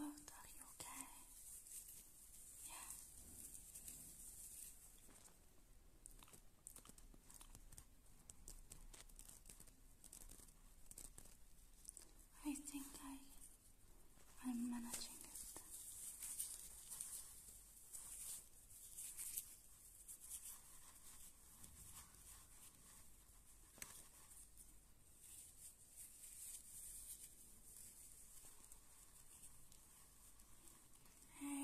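Faint, breathy whispering close to the microphone, with a couple of short voiced sounds about halfway through.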